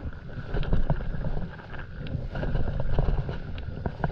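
Water splashing and sloshing at the nose of a stand-up paddleboard moving through calm sea, with wind rumbling on the microphone.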